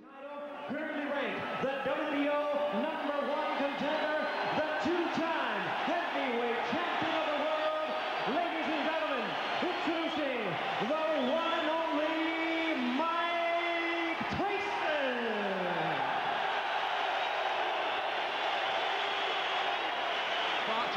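Ring announcer's voice over the arena PA calling a fighter introduction in long, stretched, sliding syllables, over a cheering arena crowd. About fifteen seconds in it ends on one long falling call, and the crowd cheering carries on.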